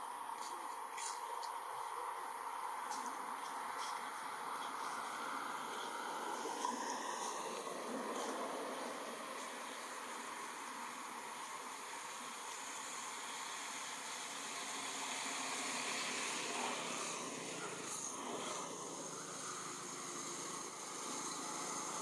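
Steady outdoor forest ambience: an even background hiss, with faint high insect tones at times.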